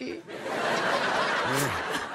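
Studio audience laughing together, a dense, even wash of laughter, with a man's short chuckle near the end.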